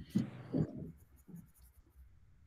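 Pen sketching on paper: a run of short, irregular scratching strokes, busiest in the first second.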